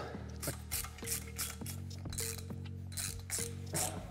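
Hand ratchet clicking in a quick, even run, about three clicks a second, as a socket on an extension runs down the cylinder nuts of a Vespa engine.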